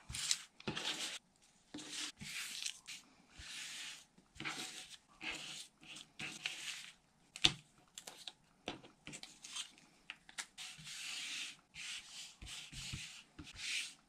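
Paper scraps and cardstock rustling and sliding across a cutting mat as they are swept up and gathered by hand, in short irregular swishes with an occasional sharp click.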